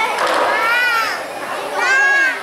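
Children in an audience shouting in high voices: two long cries that rise and fall, one shortly after the start and one near the end, over crowd chatter.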